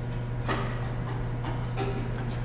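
Steady low machine hum in a laboratory room, with two faint clicks, one about half a second in and one near the end.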